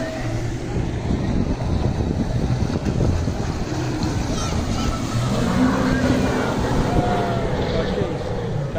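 Jet ski (personal watercraft) engine running at speed across open water, a steady rumbling drone mixed with wind noise on the microphone.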